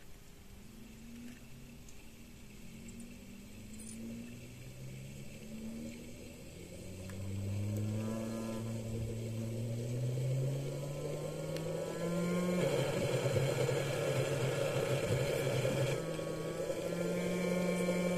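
Frost-covered stepper motor, still cold from liquid nitrogen and driven in StealthChop mode, whining in repeated rising sweeps as it is sped up, growing louder. About two-thirds through it falls into resonance, and the whine turns into a rough, steady buzz.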